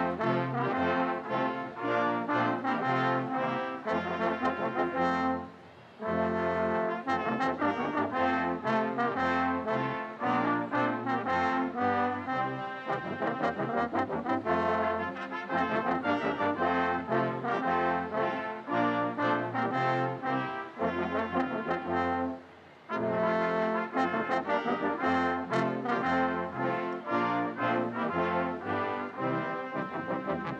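Brass ensemble playing processional music, with two brief pauses between phrases: one about six seconds in and another about seventeen seconds later.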